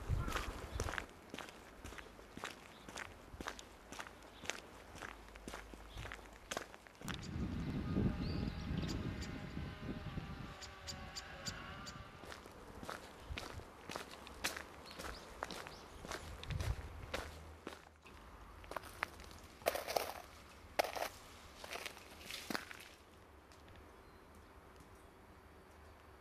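Footsteps of a person walking at a steady pace, about two steps a second, shoes crunching on a road and a dirt track. A low rumble rises over them about seven to ten seconds in.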